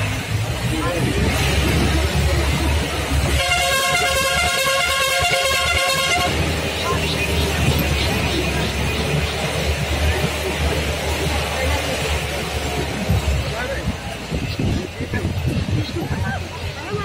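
A vehicle horn sounds one long steady note for about three seconds, starting a few seconds in, over the low rumble of a jeep driving on a rough road.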